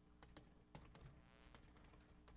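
Chalk writing on a blackboard: a faint, uneven run of sharp taps with a brief scratchy stroke near the middle.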